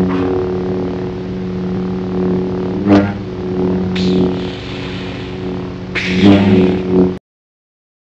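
Lightsaber sound effect: a steady electric hum, with sharp swing-and-clash hits about three seconds in, about four seconds in, and again around six to seven seconds in. The hum cuts off suddenly near the end.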